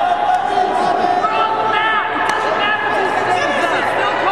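Voices in a large arena, with wrestling shoes squeaking on the mat as two wrestlers hand-fight on their feet, and a few sharp clicks.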